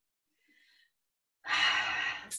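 Near silence, then about one and a half seconds in, a woman takes a loud audible breath, like a sigh.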